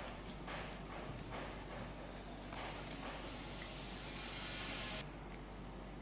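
Oracle cards being handled by hand: soft rustling and sliding of the cards with a few light taps, heaviest in the middle of the stretch.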